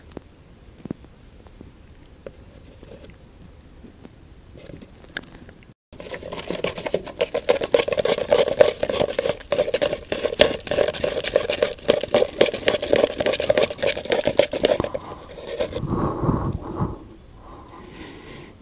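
A flat wooden stir stick scraping and knocking quickly around the inside of a plastic cup, mixing epoxy resin, for about nine seconds after a quiet start with a few faint ticks. A short low rumble of handling noise follows near the end.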